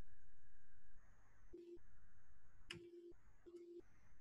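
A faint series of short, steady-pitched low electronic beeps, three in the second half, irregularly spaced.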